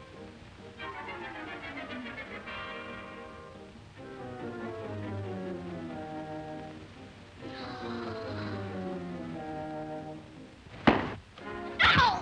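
Comic orchestral film score with sliding, descending phrases. Near the end come two sharp thuds about a second apart, the knockdown as a boxer is hit and falls to the floor.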